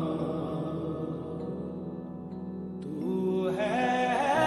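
Slowed-down, reverb-heavy Bollywood song: a long drawn-out sung note over a steady low drone, then a louder new vocal phrase rising in about three seconds in.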